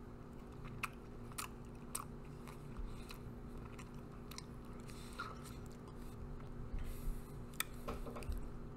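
Faint chewing of a bite of frozen chocolate fudge-type ice pop, with a scatter of short sharp clicks as the frozen chocolate is crunched.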